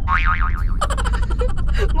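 A cartoon 'boing' sound effect: a wobbling pitch that warbles up and down several times in the first half-second or so, over the steady low rumble of the car cabin.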